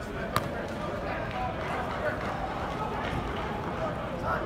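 Indistinct voices of players and coaches echoing through a large indoor football practice hall, with one sharp smack about a third of a second in.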